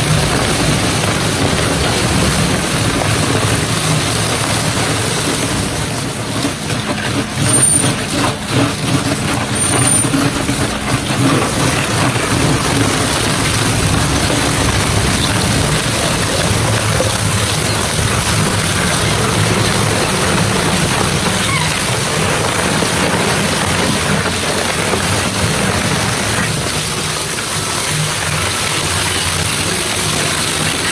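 Dual-shaft shredder (CM H-50, 50 hp) with its counter-rotating knife shafts chewing through a roll of die-cut sandpaper trim: a loud, continuous grinding churn over a low machine hum. About six seconds in there are several seconds of uneven, louder crunching and tearing, then it settles back to a steady grind.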